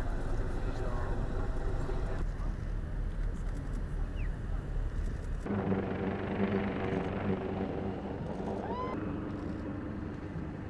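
Outdoor crowd murmur over a low rumble of wind, then, from about five and a half seconds in, a steady machine hum with several pitches at once as the solar aircraft rolls on the runway. A short rising whistle-like chirp sounds twice.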